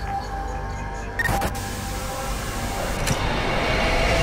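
Logo sting of music and sound effects: a sharp hit with a whoosh about a second in, then a rising swell that builds toward the end.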